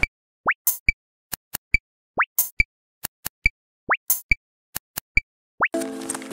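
Electronic bloop sound effect: four short upward-gliding bloops about every second and a half to two seconds, with sharp clicks ticking in between.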